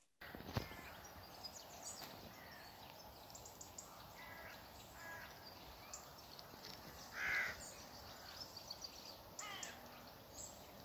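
Faint outdoor bird sounds: scattered short chirps from several small birds over a steady hiss, with one louder, longer call about seven seconds in and a quick falling run of notes near the end. There is a single sharp tap just after the start.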